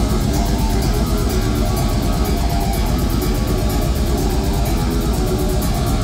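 Death metal band playing live and loud: distorted electric guitars and bass over fast, evenly repeating drumming.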